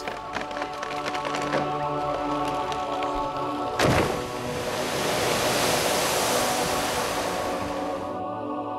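Slow background music; about four seconds in, a sudden heavy impact in the canal throws up a big spray of water, followed by a steady hiss of water falling back onto the surface that ends abruptly near the end.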